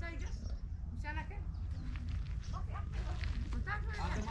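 Farm animals bleating, a few short wavering calls, over a steady low rumble of wind on the microphone.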